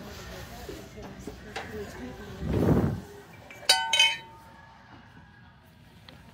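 Ceramic mugs clinking together in a shopping cart: two quick, sharp ringing clinks near the middle, just after a muffled rumble of handling.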